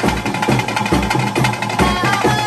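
Traditional music accompanying a Guliga daiva kola ritual: a fast, steady drum beat with a wavering high melody line above it.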